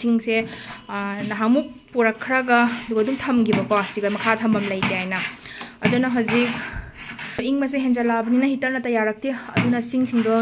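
A woman talking steadily, with only brief pauses.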